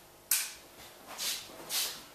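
A light switch clicks once, about a third of a second in, followed by two soft rustling hisses.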